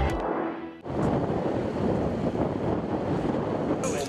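A music sting ends in the first second, then a steady rush of wind buffeting the microphone on outdoor footage.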